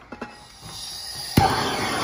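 Hand torch on a hose from a gas cylinder being lit: gas hissing, a sharp igniter click about a second and a half in, then the flame burning with a steady rushing noise as it is played on the sole of a horse's hoof to soften it.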